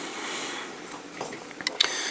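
Quiet handling noise of a paintbrush and a plastic miniature being picked up and held, with a soft hiss at the start and a few small clicks near the end.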